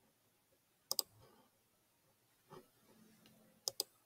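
Quiet computer mouse clicks: a quick double click about a second in, and another pair of clicks near the end as the snap grid is toggled off in AutoCAD.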